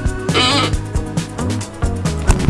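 Background music with a steady beat, over which a dog's plush toy squeaker squeals once as the dog bites it, about half a second in.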